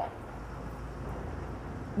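City street background noise: a steady low rumble of traffic.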